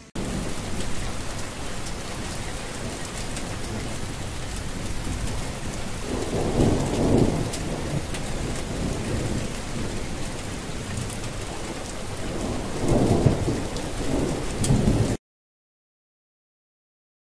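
Rain falling steadily, with two rumbles of thunder, one about six seconds in and one near the end. The sound starts abruptly and cuts off suddenly about a second before the end.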